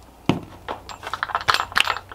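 Small hard objects handled on a workbench: a single knock, then a quick run of clicks and rattles in the last second.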